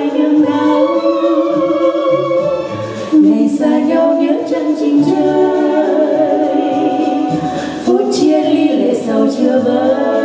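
Two women singing a Vietnamese song as a duet into microphones, in long held notes with vibrato; fresh phrases begin about three and eight seconds in.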